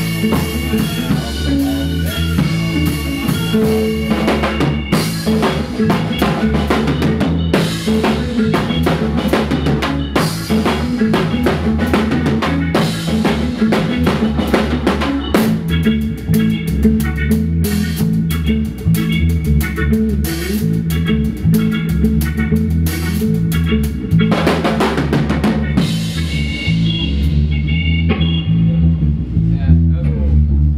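A ska band playing in a room, with the drum kit close and loudest: snare with rimshots, bass drum and cymbals, over a bass line, electric guitar and keyboard. The cymbal and high drum hits stop near the end while the low instruments carry on.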